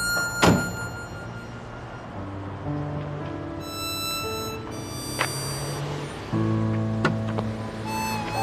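A Jeep Wrangler's door is shut once with a solid thunk about half a second in, over background music. Two lighter knocks follow later.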